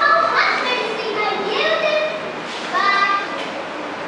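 Children's voices speaking in short, high-pitched phrases.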